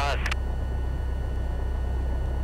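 Piper Cherokee's single piston engine running at low power on the ground, a steady low drone heard inside the cockpit, with faint steady whine tones above it. The last word of a controller's radio call ends just at the start.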